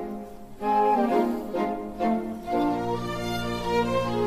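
Opera orchestra playing a soft string passage in short phrases with brief gaps, a low held note coming in about halfway.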